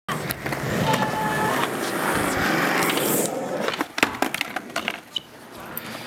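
Skateboard wheels rolling on concrete, a loud, steady rolling noise for about the first three and a half seconds. This is followed by a run of sharp clacks and knocks from the board.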